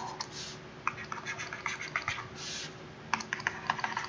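Pen stylus tapping and scratching on a tablet screen as dashed lines are drawn: an irregular run of small clicks and brief scrapes, quickening in the last second.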